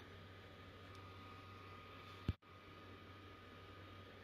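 Near silence: faint steady room hum, with a single short click a little over two seconds in.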